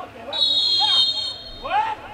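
Referee's whistle blown once, a steady shrill tone lasting about a second, signalling that the penalty kick may be taken. People's voices call out around it.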